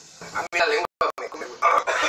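Men yelping and shouting in strained, high voices, in several short outbursts, from the burning of extremely spicy ramen.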